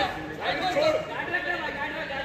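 Indistinct chatter of several voices talking at once, overlapping.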